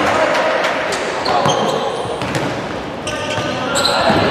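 A futsal ball knocking against feet and the wooden hall floor as it is played, with players' voices in the hall and a few short high squeaks.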